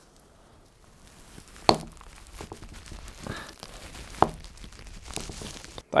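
A screwdriver being turned hard in a delidding tool, pushing the Intel Core i9-11900K's heatspreader sideways across the die. Low handling and scraping noise with two sharp clicks, one about two seconds in and one about four seconds in.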